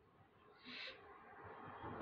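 Faint rustling of a cloth tote bag being handled and unfolded, with a short soft hiss a little under a second in and the rustle growing toward the end.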